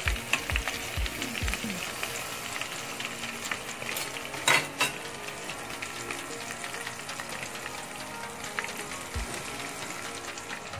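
Breaded chicken lollipops deep-frying in a pot of hot oil: a steady crackling sizzle of bubbling oil. There are a few low thumps in the first second and a half, and a louder crackle about four and a half seconds in.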